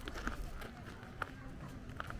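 Footsteps on a gravel path at a walking pace, about two steps a second, over faint background chatter from people nearby.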